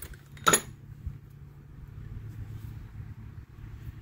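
A single sharp metal clink of hand tools knocking together in a plastic tool box about half a second in. A steady low hum runs underneath.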